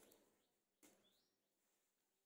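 Near silence, with one very faint click just under a second in.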